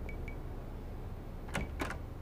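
A wooden door's lever latch clicks twice as the door is pulled shut, two sharp clicks about a quarter second apart about one and a half seconds in, over soft background music with a light repeating tick.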